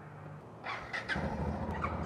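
Honda CB500X parallel-twin engine with a GPR Furore Nero aftermarket exhaust running at idle, a low steady hum that sets in about a second in.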